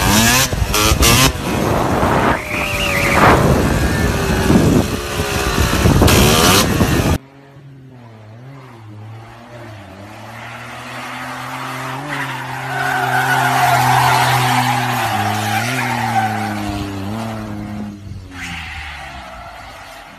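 A dirt bike's engine revving loudly and harshly, with rising sweeps in pitch. After a sudden cut about seven seconds in, a car's engine runs steadily while its tyres skid and hiss through a hairpin bend, loudest in the middle.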